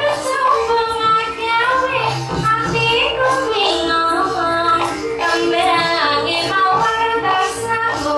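Javanese gamelan music accompanying a wayang kulit shadow-puppet play, with a high female voice (a sindhen) singing a winding melody over a steady held tone.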